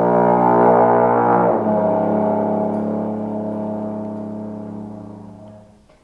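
Trombone holding a long low note, which steps to a slightly lower pitch about a second and a half in and then slowly fades away to nothing near the end.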